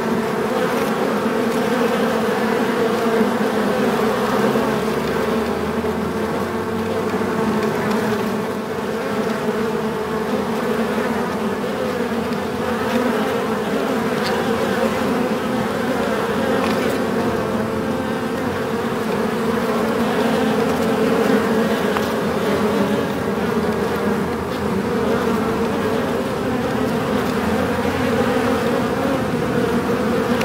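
Many bees buzzing together in a beehive: a steady, dense hum that holds without a break.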